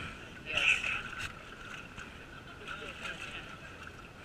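Indistinct voices of a group of people talking, none of it clear words, with one louder voice about half a second in, over a steady outdoor background hiss.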